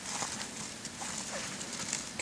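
Faint rustling of spruce boughs and a few light knocks of sticks as a homemade alder-stick and spruce-bough snowshoe is handled and lifted.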